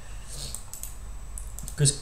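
Light clicks and taps on a computer keyboard, in two short clusters.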